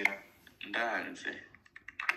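A person's voice for about a second, followed near the end by a few quick, faint clicks.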